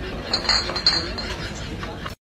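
Glass bottles clinking together: a few short ringing chinks in the first second.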